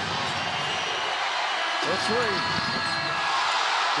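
Basketball arena crowd noise, a steady din of many voices, with a single voice calling out about two seconds in.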